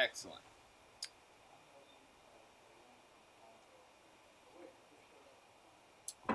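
An acoustic guitar's last strum is cut off at the very start, followed by a sharp click about a second in. Then comes quiet room tone with a faint murmur near the end.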